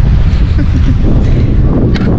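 Wind buffeting the camera's microphone, a loud and steady low rumble.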